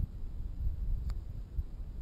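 Wind rumbling on the microphone, uneven and low, with a single sharp click about a second in.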